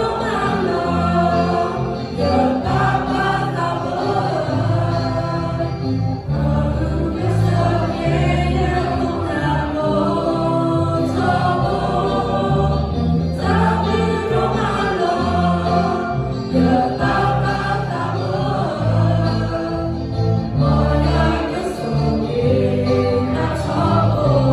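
Mixed choir of young voices singing a hymn together, phrase after phrase over sustained low accompanying notes.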